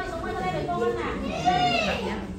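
Young children's voices talking and calling out over one another, with one high child's voice rising and falling near the end.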